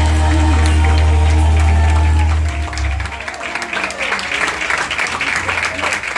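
A worship song played over loudspeakers ends on a held chord with heavy bass about halfway through, then the congregation applauds.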